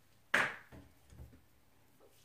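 Handling noise from makeup tools: one sudden sharp knock about a third of a second in, then a few faint short taps.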